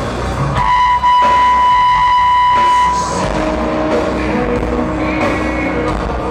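Rock band playing live, amplified electric guitar and drums heard loud in a large hall. About a second in, a high note is held for about two seconds over the band before the music moves to lower notes.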